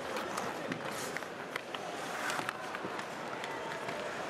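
Ice hockey arena crowd noise, with many scattered sharp clicks and scrapes from play on the ice: sticks, puck and skates.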